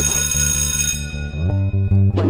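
Television programme's opening theme music: a bright chime that rings out and fades over about a second, over a steady pulsing bass line.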